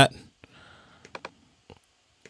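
A few light, separate clicks at a computer keyboard and mouse while an edit is saved and the view is switched: a quick cluster about a second in and one more near the end.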